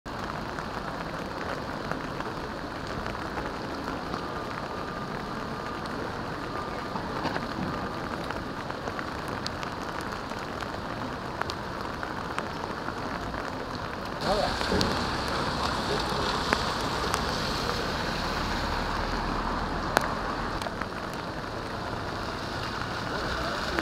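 Steady rain falling on wet pavement, splashing on the paving stones. About 14 s in it becomes louder and brighter, with a low rumble underneath and a few sharp taps.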